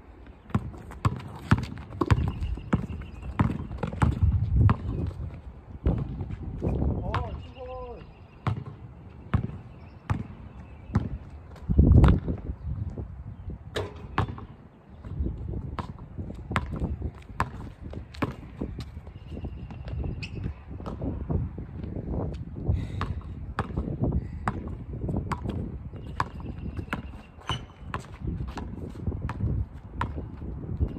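A basketball dribbled on an outdoor asphalt court: a run of sharp bounces throughout, with a heavier thud about twelve seconds in.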